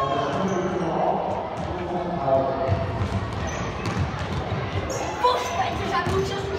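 Ball play on a hard sports-hall floor during an indoor football match: the ball being kicked and bouncing, with short high squeaks and voices calling out, all echoing in the large hall.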